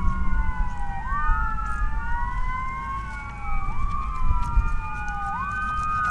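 Several emergency-vehicle sirens, fire trucks among them, wailing at once, their slow rising and falling pitches crossing each other. A steady low rumble runs underneath.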